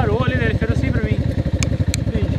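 A motorcycle engine idling with a steady, fast low pulse, with a man's voice over it in the first second.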